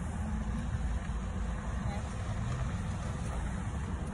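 A motor vehicle engine idling: a steady low rumble with no change in pitch.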